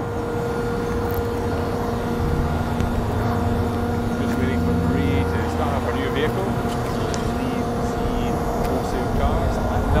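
A steady low mechanical hum with a constant pitched drone over it. Faint voices come in about halfway through.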